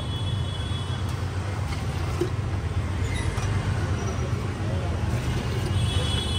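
Juice being poured from a steel jug through a strainer into a glass, over a steady low hum.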